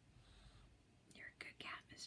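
Near silence, then a faint whisper in the second half.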